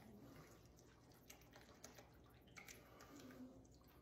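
Near silence, with faint soft liquid sounds of thick tomato juice pouring from a can into a pot of chili.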